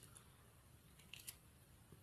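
Near silence: room tone with a few faint, brief clicks a little over a second in.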